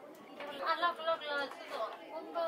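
Only speech: voices talking in the background, with no distinct non-speech sound.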